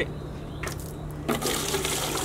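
Spent cider-vinegar rust-removal solution pouring out of a motorcycle fuel tank's filler hole into a bucket as the tank is tipped over, starting about a second and a half in. The liquid is laden with rust from the tank.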